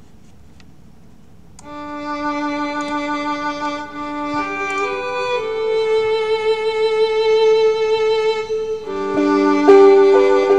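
Slow instrumental introduction to the song starts about one and a half seconds in: long, held string notes with a violin to the fore, moving to new notes around the middle and again near the end, ahead of the vocal.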